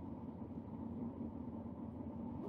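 Quiet, steady low hum inside a car cabin, with a faint steady tone over it.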